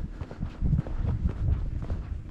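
Footsteps on a concrete boat ramp, a few dull thumps, with wind buffeting the microphone.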